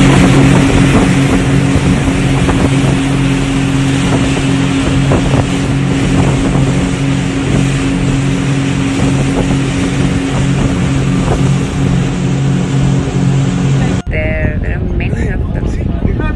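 Motorboat running steadily at speed: a constant low engine drone under the rush of water along the hull and wind buffeting the microphone. About fourteen seconds in it cuts suddenly to a quieter wash of sea and wind.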